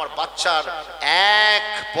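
A man preaching through a microphone and PA: a few quick syllables, then, about a second in, a loud drawn-out chanted note held for about half a second before the speech resumes.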